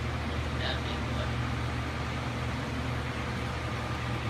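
A steady low mechanical hum with a hiss over it, like a motor running.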